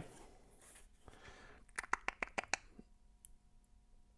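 Hands picking up and handling a metal tobacco tin: a quick run of light clicks and taps about two seconds in, otherwise quiet.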